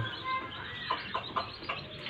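A broody hen making a few short, high calls from her nest of eggs, with several light taps around the middle.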